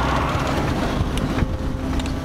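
Pickup truck driving, heard from inside the cab: steady engine and road rumble with wind noise.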